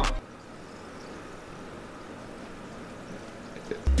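Perrier sparkling water fizzing in a crystal glass: a faint, steady crackle of bursting bubbles.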